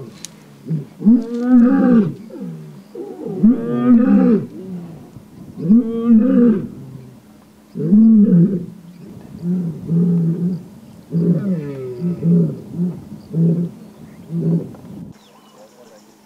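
Lioness roaring: four long, deep moaning roars about two seconds apart, then a run of about ten shorter grunts that die away near the end.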